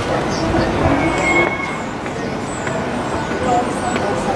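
Street ambience: steady road-traffic noise with indistinct voices.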